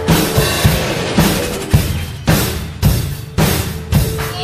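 Drum kit playing a steady rock beat. A hard bass drum and snare hit lands about every half second, with cymbals ringing between the hits.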